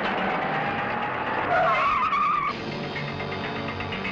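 A jeep's engine running at speed, with a short wavering tyre squeal about halfway through.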